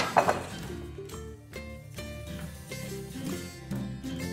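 A metal pan set down on a kitchen counter with a clank that rings briefly, right at the start. Background music plays throughout.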